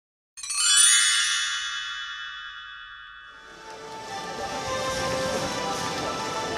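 A single bright chime strikes about half a second in, a cluster of ringing tones that dies away over some three seconds. After it, the steady murmur of a stadium crowd comes up.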